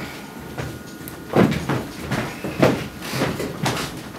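A few loud, sharp thuds about a second apart, the loudest a little over a second in and again just past the middle, from the men leaving the stage.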